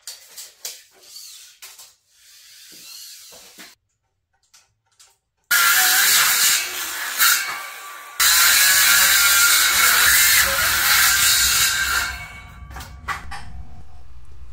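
Power circular saw cutting a pressure-treated 2x4 to length, starting about five and a half seconds in and running loud for about six seconds, with a brief dip near the middle. Light knocks of the lumber being handled come before the cut.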